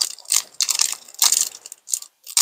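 Foil wrapper of a Pokémon booster pack crinkling as it is handled, in several short rustling bursts.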